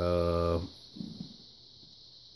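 A man's drawn-out hesitation sound, held for about half a second, then quiet room tone with a faint steady hiss.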